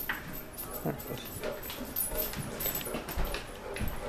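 A basset hound moving about on a hardwood floor, its claws tapping irregularly, with a few soft whimpers.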